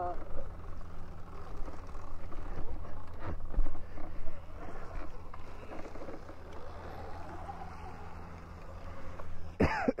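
Faint talk from people nearby over a steady low hum, with a short laugh near the end.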